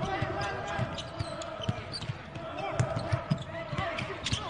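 A basketball dribbled on a hardwood court: a string of uneven bounces as the ball is pushed up the floor and into a drive, with players' voices faint behind.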